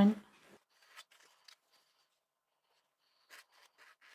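Faint rustling and brushing of cotton fabric as its edges are folded over and finger-pressed flat on a table. There are a few soft scrapes, one about a second in and a pair near the end.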